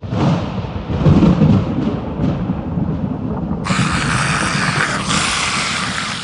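A deep rumbling noise starts suddenly, and about halfway through a steady hiss joins over it.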